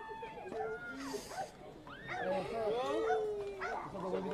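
A dog barking several times in short calls, with people's voices in the background.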